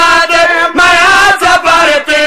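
A man's voice chanting a drawn-out sung line through a microphone, holding long notes that waver in pitch, with brief breaks between phrases.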